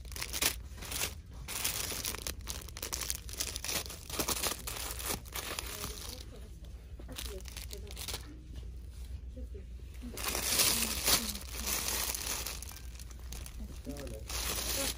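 Plastic-wrapped party supply packs crinkling and rustling as they are handled, in irregular bursts, with a louder stretch about ten seconds in.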